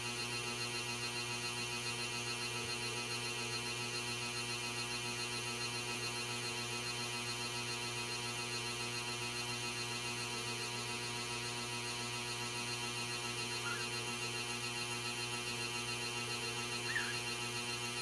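Steady electrical mains hum with a buzzy edge, unchanging throughout. Two brief, faint high-pitched squeaks come near the end.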